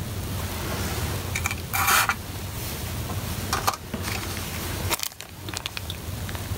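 Steady low background hum with brief handling noises: a short rustle about two seconds in and a few light clicks later on, as small plastic model parts are handled in the fingers.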